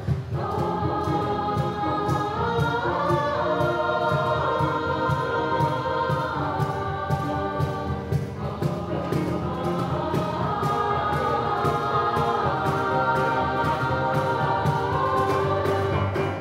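A mixed choir of men and women singing an upbeat show tune together, with piano accompaniment. Drums and cymbals keep a steady, even beat underneath.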